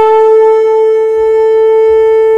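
A conch shell (shankh) blown in one long, steady note at a single pitch.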